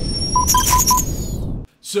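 Electronic transition sound effect: a noisy whoosh with high synth tones slowly rising, and a quick run of five short beeps, cutting off suddenly a little after a second and a half. A man's voice starts right at the end.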